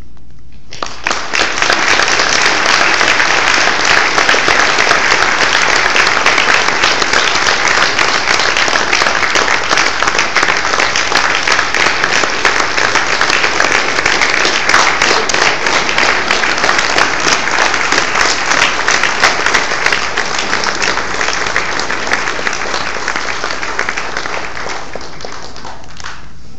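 A large group applauding for a long time, starting about a second in and easing off a little near the end.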